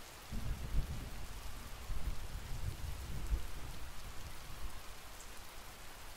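Steady rainfall hissing, with a low rumble of distant thunder that swells shortly after the start and fades out near the end.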